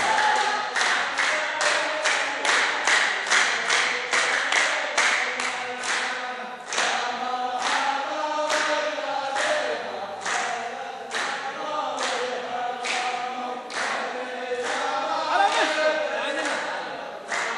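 A line of men singing a verse together in unison, without instruments, over steady unison handclaps at about two claps a second.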